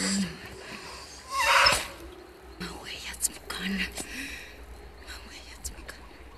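A woman speaking softly, almost in a whisper, in the film's alien Na'vi language, in short breathy phrases over a faint low background.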